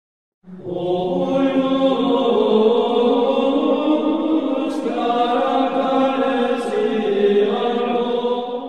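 Religious chant: voices singing long sustained notes that start about half a second in and carry on throughout.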